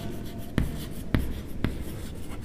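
Chalk writing on a chalkboard: faint scratching broken by three sharp taps of the chalk against the board, about half a second apart.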